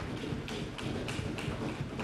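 Several scattered sharp taps and knocks over a steady low hum in a large hall.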